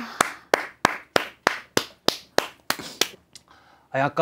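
A person clapping hands at a steady pace, about three to four claps a second, stopping a little after three seconds in.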